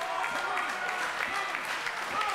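Steady hubbub of a small ringside crowd, with faint scattered voices calling out.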